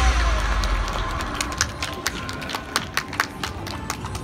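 Pop show music fading out, followed by scattered, irregular hand claps from a few audience members.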